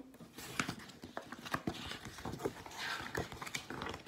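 Paperback picture book being handled and turned over: quiet, irregular light clicks and paper rustles.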